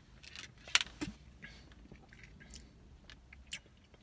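A man drinking a protein shake from a plastic shaker bottle: faint gulps and swallows with a few small clicks and knocks, the sharpest a little under a second in.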